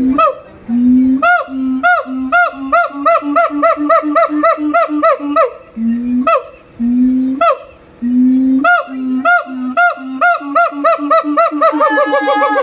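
Siamangs calling: low notes alternating with higher rising-and-falling whoops, repeated in a series that speeds up into a rapid run. There are two such runs, the first fading out about halfway through and the second building again near the end after a few spaced notes.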